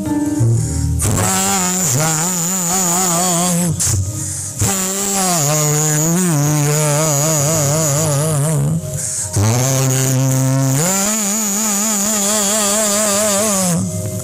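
A man singing solo into a handheld microphone, long drawn-out notes with strong vibrato, in phrases broken by brief pauses every four or five seconds.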